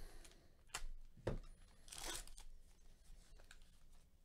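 A baseball card pack's wrapper being torn open and handled: a few short, sharp crinkles, then a longer tearing rasp about two seconds in.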